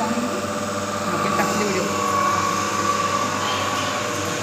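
DC shunt motor running at a steady speed: a constant hum with a steady high whine.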